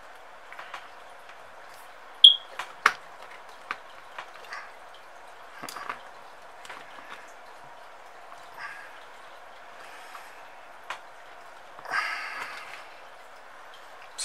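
Small plastic clicks and taps of a nylon zip tie being threaded and pulled tight on a carbon-fibre quadcopter frame, with a sharp click about two seconds in and a short ratcheting rasp of the zip tie near the end, over a faint steady hiss.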